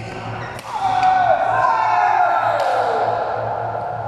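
Badminton rally: sharp cracks of rackets striking the shuttlecock, about three in all, near the start, about half a second in and past two and a half seconds. Over the middle, a loud drawn-out tone wavers and falls in pitch, with a low steady hum underneath.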